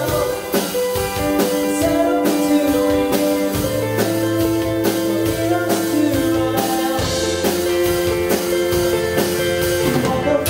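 Live band playing a song: electric guitars ringing out sustained notes over a steady drum-kit beat, with a sung vocal line.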